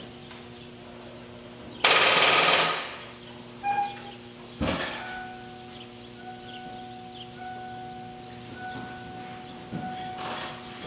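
The starter of a 1987 Ford Mustang LX 5.0 is tried for about a second as a rapid, loud clatter, and the engine does not catch. The owner suspects a dead battery. A sharp knock follows a few seconds later.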